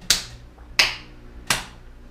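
One person clapping slowly overhead: three sharp, single hand claps about two-thirds of a second apart.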